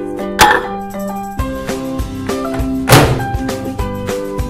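Two loud thunks about two and a half seconds apart over background music, the first from the microwave door being shut.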